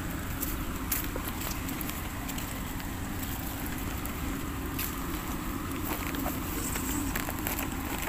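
Steady outdoor background noise with a low rumble, broken by a few faint sharp clicks, one about a second in and one near five seconds.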